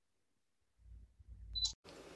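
Silence, then a faint low rumble, then near the end a single short click of a Canon EOS 250D DSLR shutter firing during a remote-controlled capture.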